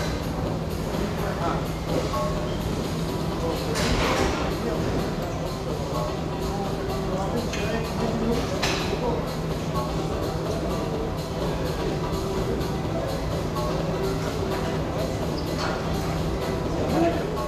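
Gym ambience: background music and indistinct chatter over a steady low hum, with a few thuds, about four seconds in and again near nine seconds, from the athletes' burpees and barbell work.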